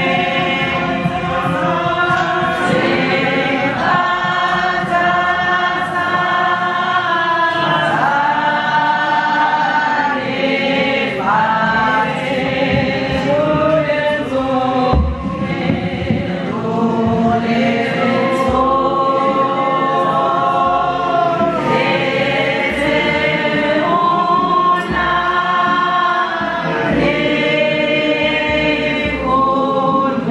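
Choir singing a gospel hymn in long held notes, with a low beat from about halfway.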